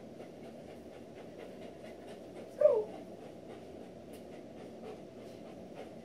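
A Doberman panting steadily, with one short vocal sound falling in pitch about two and a half seconds in.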